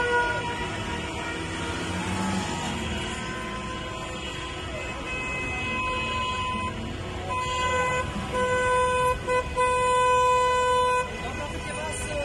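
Car horns honking in celebration from a passing convoy of cars, several horns overlapping over traffic noise. The loudest part is a horn sounding in several long blasts from about seven to eleven seconds in.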